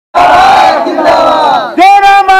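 A crowd of men shouting a protest slogan together, starting suddenly; near the end one loud voice takes up a long, held shouted call.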